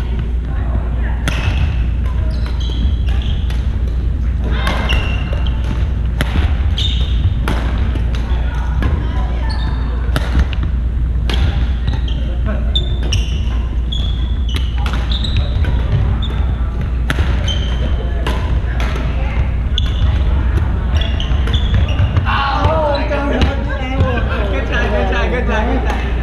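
Badminton play on a gym floor: sharp racket-on-shuttlecock hits at irregular intervals and short sneaker squeaks on the hardwood, over a steady low hum and voices from the hall, with talking near the end.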